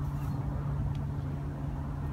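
Steady low outdoor rumble with a constant low hum, with one faint click about a second in.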